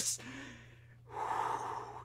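A man's shout cuts off right at the start. After a short near-silent pause, one audible breath through the mouth lasts about the last second.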